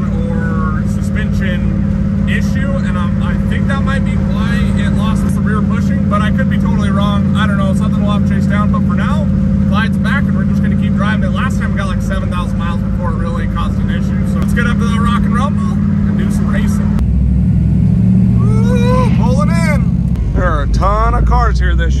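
A man talking over the steady engine and road drone inside the cabin of a 1972 Mazda RX-2 with a swapped Gen V L83 5.3-litre V8, cruising at highway speed, with a faint steady whine that stops about fourteen seconds in. About seventeen seconds in the sound cuts to a different, lower rumble, with more talk.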